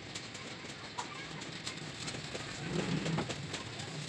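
Birds calling over a steady background, with a low coo about three seconds in and a few faint clicks.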